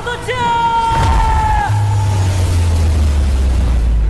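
A man's voice ending a line with one long, drawn-out shout that holds its pitch and then sinks slowly. About a second in, a deep boom comes in beneath it and carries on as a heavy low rumble.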